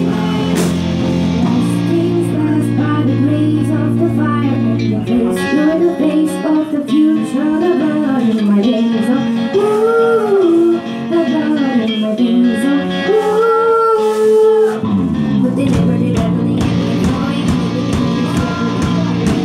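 A woman singing a song live into a microphone over backing music. The low, sustained part of the accompaniment drops out about five seconds in, leaving the voice more exposed, and comes back about fifteen seconds in.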